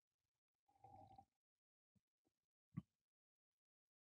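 Near silence, with faint sounds of a man sipping and swallowing beer: a soft slurp about a second in and a small click near three seconds.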